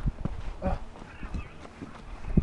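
Footsteps of hikers walking on a dirt forest trail, uneven low thumps about three times a second, mixed with knocks from the handheld camera swinging as its holder walks.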